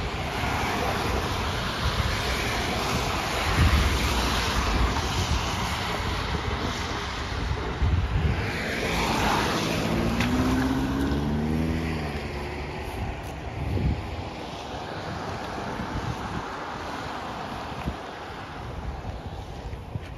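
Street traffic on a wet, slushy road: tyres hissing through water as cars go by, with one louder pass about nine seconds in. Wind rumbles on the microphone.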